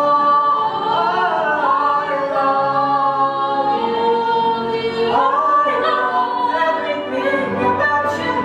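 A group of young performers singing together in long held notes, the melody moving to new pitches about five seconds in.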